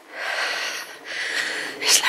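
A walker breathing hard close to the microphone: two long, noisy breaths of just under a second each.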